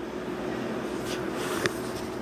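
Quiet kitchen room tone: a steady low hum with faint background noise, and a single short click about one and a half seconds in.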